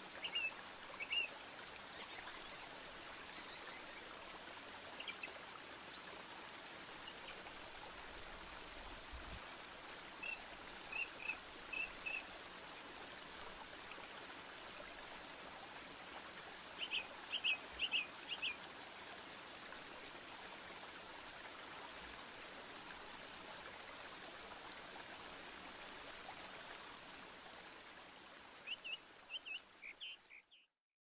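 Steady rushing of running water with short groups of bird chirps now and then, the longest run about two-thirds of the way through; it fades out near the end.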